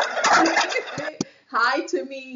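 A person laughing hard in breathy bursts, ending in a short voiced sound near the end.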